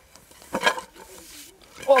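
Wooden slats of a natural-wood camping table knocking together as the slatted tabletop is unrolled onto the ground, loudest about half a second in. A man murmurs low in the middle and gives a short exclaimed "of" at the end.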